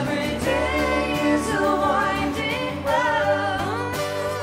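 Live band music with a sung voice gliding between held notes over steady sustained chords.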